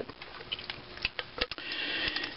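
Scattered light clicks and taps, about six in under two seconds, as a cast-iron engine carburetor (mixer) is handled and turned over in the hands.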